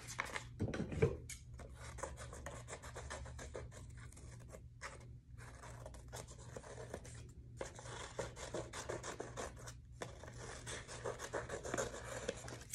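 Scissors snipping through sheets of painted paper: a long run of quick, small cuts with the paper rustling in the hand, broken by a few brief pauses.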